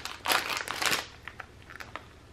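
Clear plastic bag crinkling as it is pulled open in the first second, followed by a few faint rustles.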